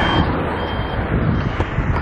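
A minivan driving past on an asphalt road, with steady tyre and engine noise.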